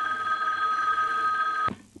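A telephone ringing: one steady ring of under two seconds that cuts off suddenly.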